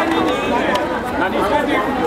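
Chatter of a crowd of men, several voices talking over one another at once.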